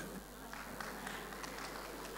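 Faint room tone: a low, even hiss with no distinct sounds.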